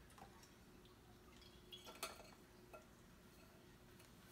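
Near silence, with a few faint small clinks about two seconds in, as canned chickpeas are tipped into a metal mesh strainer.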